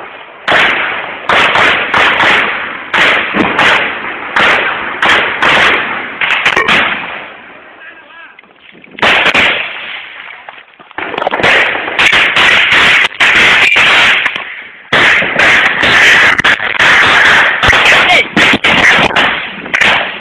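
Heavy gunfire at close quarters: many very loud shots in rapid, overlapping runs. There is a lull about seven seconds in, and the firing picks up again and runs on densely.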